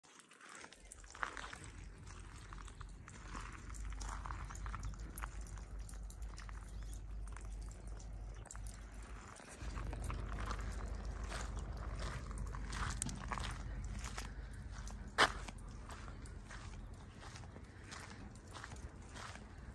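Footsteps on gravel as someone walks steadily, over a low steady rumble. One sharper click stands out late on.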